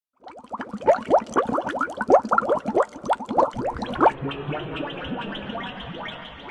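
Underwater bubbling: a rapid string of short, rising blips for about four seconds, then a softer, steady gurgling wash.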